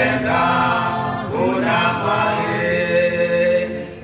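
A large congregation singing a hymn a cappella, many voices together on long held notes. The singing dips briefly between phrases near the end.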